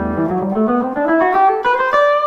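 Early-1990s PRS Custom 24 electric guitar on its bridge humbucker, played through a Boss WL50 wireless with cable emulation set to long and a little reverb. A ringing chord gives way to a run of single notes climbing in pitch, and the last note is held and rings out.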